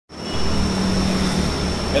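Steady room background noise: a constant low hum with hiss and a faint high whine. It sets in at once and holds level, with no words over it.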